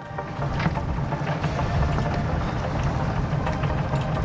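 Sailboat's inboard diesel engine running steadily as the boat motors along, a low rumble with a rushing hiss over it. It fades in at the start and then holds at a steady level.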